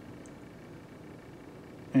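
Quiet room tone: a low, steady hiss with no distinct sound, before a man's voice starts right at the end.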